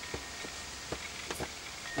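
A few faint clicks and knocks of a photo umbrella's shaft being pushed through the umbrella bracket on a light stand, over a faint steady hiss.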